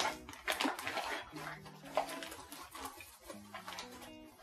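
Rummaging through a bag of supplies: irregular rustling and crackling of the bag and the items inside it as a hand digs through them. Soft background music with low bass notes plays underneath.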